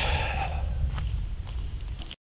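Low, fluttering rumble of wind on the microphone, with a short breathy hiss at the start and a couple of faint clicks.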